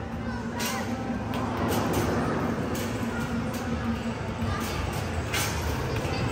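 Basketballs knocking against the backboard and rim of an arcade basketball shooting machine in a quick irregular series, over the din of a busy arcade.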